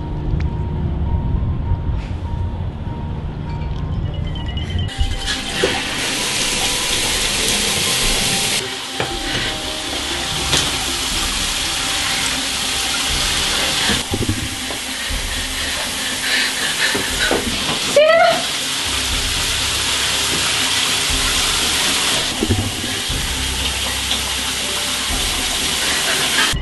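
Water running with a steady, loud hiss, as from a shower, starting about five seconds in and changing level abruptly a few times, over music. A brief rising tone sounds about 18 seconds in.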